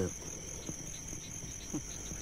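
Crickets chirping in a steady high trill. A man's voice trails off at the very start, and a brief faint voice comes near the end.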